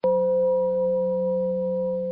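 A Buddhist singing bowl struck once, ringing with a low steady hum and two higher tones that slowly fade.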